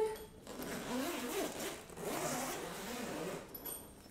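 The zipper of a padded instrument case being unzipped around its edge, one continuous run from about half a second in until shortly before the end.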